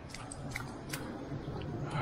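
Rustling handling noise with a few light clicks, from a handheld camera being moved about.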